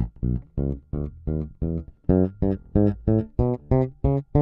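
Electric bass guitar playing a chromatic exercise staccato: single plucked notes, about three a second, each cut short by lifting the fretting finger so that a short gap separates every note.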